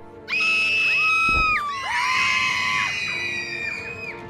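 High-pitched screaming: one long shrill scream starts about a third of a second in and breaks off at about a second and a half, followed by several overlapping screams that run until near the end, over faint background music.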